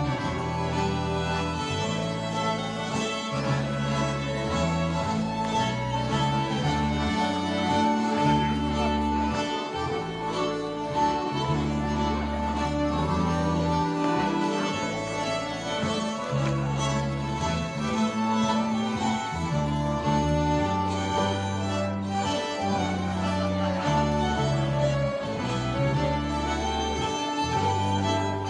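Live Swedish gammeldans (old-time dance) band playing a dance tune on fiddles and accordion, with a bass line stepping from note to note about once a second.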